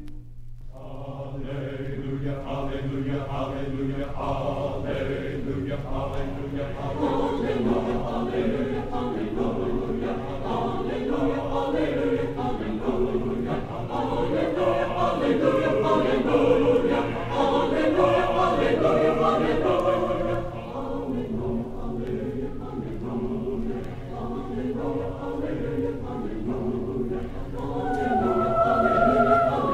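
A choir singing a sacred piece, heard from a live 1967 college concert recording on vinyl LP. The piece begins about half a second in, just after a held chord cuts off.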